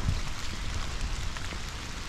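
Steady rain falling on wet leaf litter, an even hiss with a low rumble beneath it.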